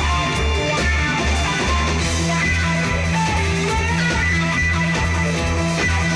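Guitar-led rock band music: electric guitars over a driving bass line and drums at a fast, even pulse, with no singing.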